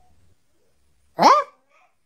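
One short, high yelp about a second in, rising then falling in pitch; otherwise quiet.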